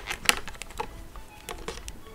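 A few faint, irregular clicks and taps from hands handling a Stagg electric violin, fiddling at the bridge and the jack socket beneath it.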